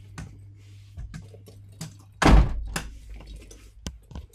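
A door shutting with a single heavy thump about two seconds in, among lighter scattered knocks and clicks.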